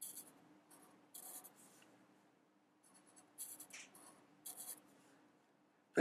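Sharpie felt-tip marker drawing on paper: four short, faint, squeaky strokes about a second apart, one ending in a brief rising squeak.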